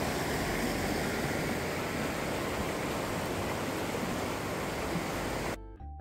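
Steady rushing wind noise on the microphone, which cuts off abruptly near the end as music with held notes begins.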